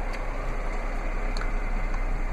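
Steady background hiss with a constant low hum, and a couple of faint clicks.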